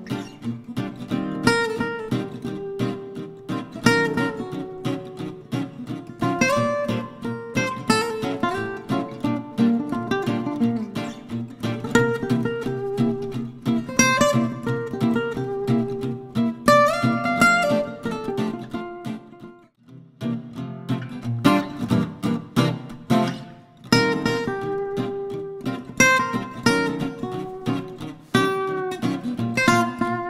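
Background music of plucked and strummed acoustic guitar, with a brief break about two-thirds of the way through.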